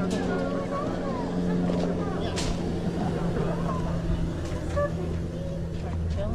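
Several people chatting outdoors over a steady low hum.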